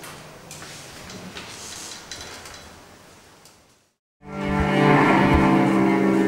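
Faint room noise with a few small clicks, then after a short silence a cello starts loudly, bowed in one sustained note.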